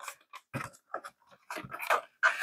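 Hands working inside the foam fuselage of an RC airplane, handling the wiring in the battery bay: scattered light crinkles and scrapes of foam, plastic and wire, busiest near the end.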